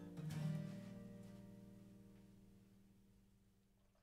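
Acoustic guitar's final chord, struck once just after the start and left to ring, dying away slowly over about three seconds.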